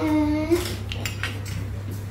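A spoon clinking against a bowl: a sharp clink about half a second in and a few lighter clicks around a second in, over a steady low hum. A short vocal sound opens it.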